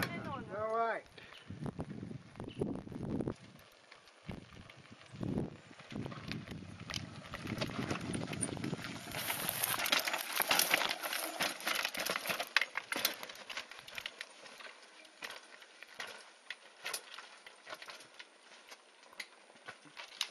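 Mountain bike clattering and rattling over loose rocks and stones on a rough singletrack, heard close to the bike. There is a quick irregular run of clicks and knocks, thickest in the middle and sparser near the end.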